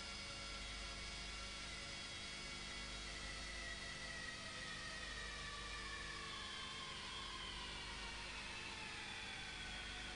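Motor-driven tube expander running in a boiler smoke tube. Its whine holds steady, then slowly falls in pitch through the second half as the tube is rolled into the tube plate. A steady hiss and a low hum lie under it.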